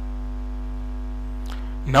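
Steady electrical mains hum, a low drone with faint steady tones stacked above it, picked up by the recording microphone. A man's voice starts speaking at the very end.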